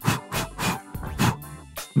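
Background music, with about five short breathy mouth puffs like spoken plosives, made close beside a microphone angled away from the mouth to test whether the air reaches it; maybe some was picked up, hopefully most not.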